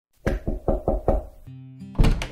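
Knocking on a door: five quick, evenly spaced raps, about five a second. A steady musical tone comes in right after the last knock, near the end.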